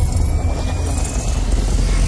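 Cinematic intro sound effect: a deep, steady rumble with a faint thin tone rising slowly above it.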